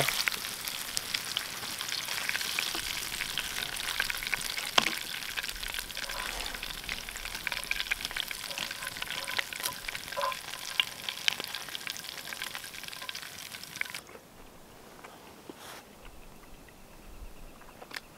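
Breaded crappie fillets sizzling and crackling in hot vegetable oil in a frying pan, with sharp clicks of a fork against the pan as they are lifted out. The sizzle cuts off suddenly about fourteen seconds in, leaving a quiet background.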